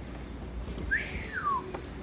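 A single short whistle about a second in, rising and then falling in pitch, over steady low room hum.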